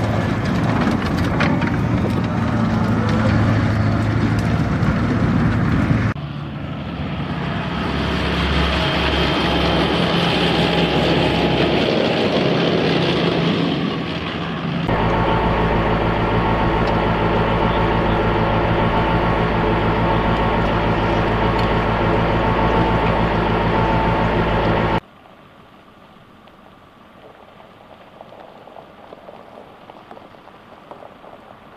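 Diesel engine of an M270 tracked rocket launcher running steadily with a loud, even hum. The sound is split into several clips, the last of them with the engine idling. About 25 seconds in it cuts abruptly to a much quieter low background rumble.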